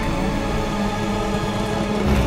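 Tense trailer score: a held low drone over a deep rumble.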